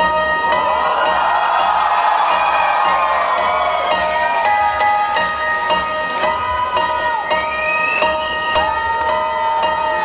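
Live song intro: held bell-like synthesizer chords, with a concert crowd cheering over them.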